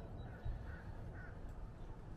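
Quiet low background rumble, with two faint short calls from a distant bird half a second apart near the middle.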